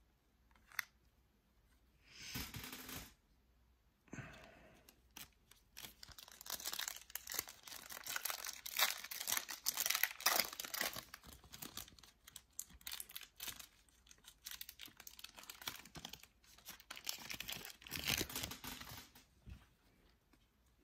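Foil trading-card pack torn open and crinkled by gloved hands, with cards sliding against each other: a short rip about two seconds in, then constant crackling and rustling from about four seconds in until near the end.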